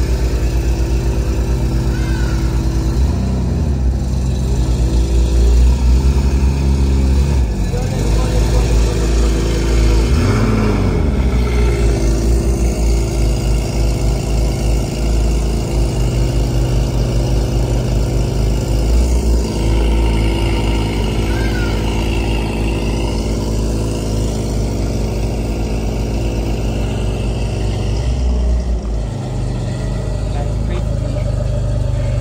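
Sports-car engine idling, with short revs about three, seven and ten seconds in, then running steadily.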